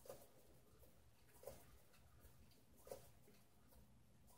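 Near silence with faint, short ticks about every second and a half from a spinning lazy Susan's bearings turning under a canvas.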